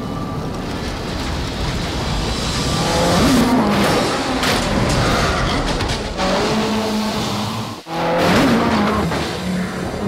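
Ford Fiesta rally car's turbocharged four-cylinder engine revving hard, its pitch rising and falling as the car drifts, with tyres screeching on pavement. The sound cuts out briefly and abruptly about two seconds from the end, then returns at full revs.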